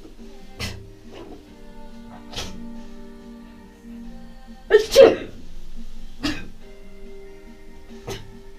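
A woman sneezing several times in a row, the loudest a double sneeze about five seconds in, over background music with steady held notes.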